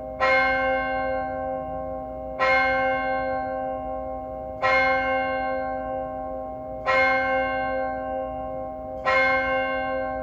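A single church bell tolling slowly, struck five times at even intervals of a little over two seconds. Each stroke rings on and fades, and a low hum hangs between strokes. It is the call to worship before the service begins.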